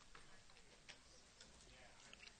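Near silence: faint room tone in a hall, with a few soft, scattered clicks.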